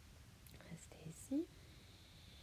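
A woman's soft, breathy voice, whispered sounds and breath, with one brief rising vocal sound about a second and a half in.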